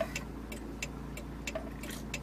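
Steady low rumble of a truck on the move, heard inside the cab, with light clicks and ticks scattered irregularly throughout.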